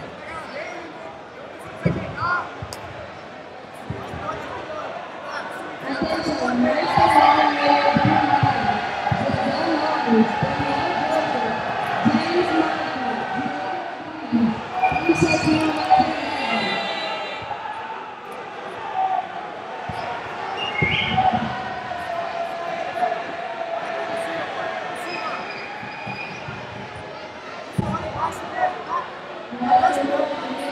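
Indoor arena ambience at a jiu-jitsu match: voices shouting from the sidelines, loudest and busiest from about six to eighteen seconds in, with a few dull thuds of bodies on the mats.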